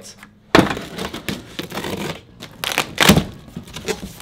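Cardboard shipping box being torn open and its flaps pulled back: a sudden rip about half a second in, irregular scraping and crinkling of cardboard, and a second sharp rip near three seconds.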